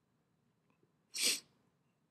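A single short, sharp intake of breath close to the microphone, about a second in.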